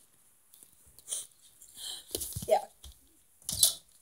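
A few short rustling, crinkling handling sounds, spaced apart, with a brief spoken 'yeah' in the middle.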